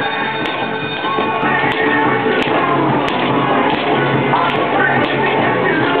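Music playing, with a handful of sharp clicks scattered through it as padded mallets hit the pop-up moles of a whack-a-mole arcade game.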